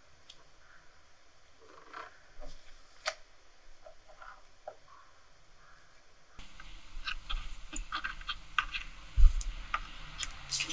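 Small scissors snipping and crinkling thin cap plastic along a silicone prosthetic's edge: faint, scattered clicks, growing busier in the second half, with one soft low thump near the end.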